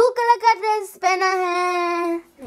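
A child's voice singing a short sing-song phrase: a few quick notes, then one long held note.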